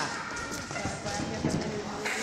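Dull thumps and shuffles from two boxers sparring on the ring canvas, with background voices.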